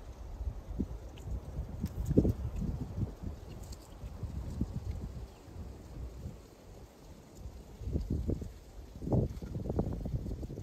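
Low wind rumble on the microphone, with the soft sounds of beer pouring from a can into a glass at the start, then sips and swallows.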